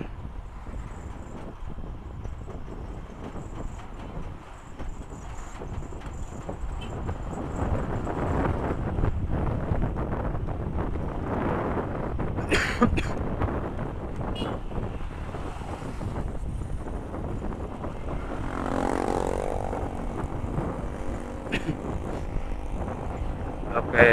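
Riding on a motorbike: engine and wind-and-road noise on the onboard microphone, growing louder about a third of the way in. A brief sharp sound comes about halfway through, and a short pitched sound about three quarters of the way in.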